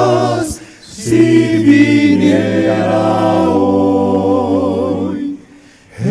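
Male vocal ensemble singing a Spanish hymn a cappella in close harmony through microphones. A held chord ends about half a second in, and after a brief breath a new phrase is sung and held until about a second before the end, then stops.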